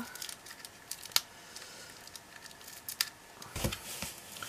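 Handling noise of a ribbon spool being turned and fiddled with in the hands: scattered light clicks and rustles, a sharp tick about a second in and a louder bump near the end.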